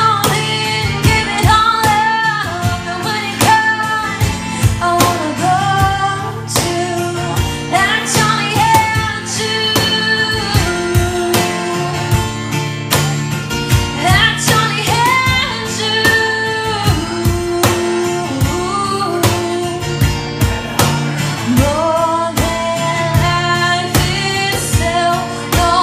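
A woman singing live, accompanied by a strummed acoustic guitar and a cajón beaten by hand in a steady rhythm.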